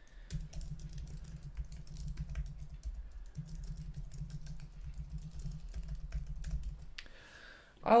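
Typing on a computer keyboard: a steady run of quick keystrokes for about seven seconds, stopping shortly before the end.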